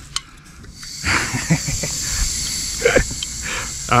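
Hand-held gas torch on a yellow cylinder: a click just after the start, then gas hissing steadily from about a second in.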